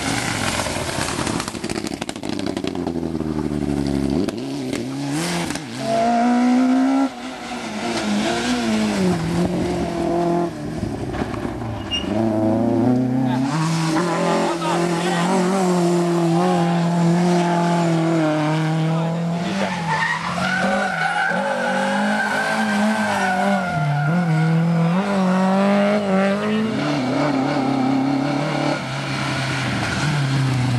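Rally car engines revving hard as the cars pass one after another through corners. The pitch climbs and falls repeatedly with gear changes and lifts off the throttle, from a four-cylinder Mitsubishi Lancer Evolution and then Lada saloons.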